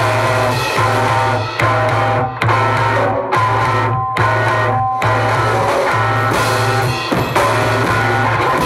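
Live rock band playing electric guitars and bass over a drum kit, the low bass note repeating in phrases that break off about every 0.8 seconds.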